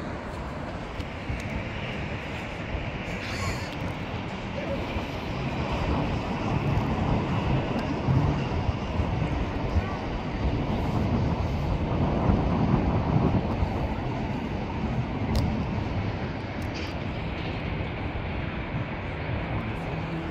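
Low outdoor rumbling noise that swells over the middle seconds and eases off again, with faint voices under it.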